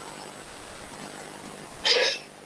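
A dog barks once near the end, short and loud, over faint background noise.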